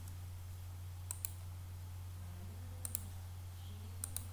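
Computer mouse clicking: two quick pairs of sharp clicks, about a second in and again near three seconds, over a steady low electrical hum.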